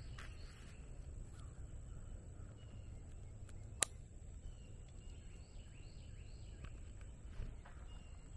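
Faint bird calls, a few short chirps, over a low steady outdoor rumble, with one sharp click about four seconds in.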